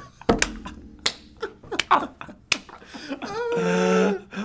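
Hard laughter broken by a run of sharp clicks, about one every half second to second, with a longer drawn-out voice sound near the end.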